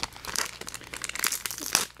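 Crinkling and rustling of trading cards and foil booster-pack wrappers being handled, a run of irregular crackles.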